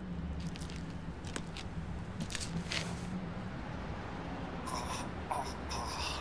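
Steady low hum of background ambience with a few light clicks, and three short high squeaks near the end.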